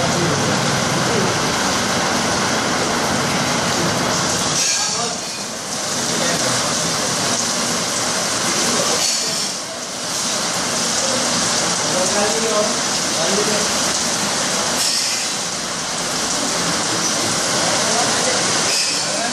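Heavy rain pouring down in a steady, loud hiss, with people talking in the background.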